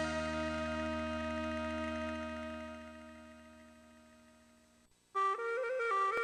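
Music: the final held chord of a Taiwanese-language song fades out over about five seconds. A new piece then starts suddenly with a wind-instrument melody.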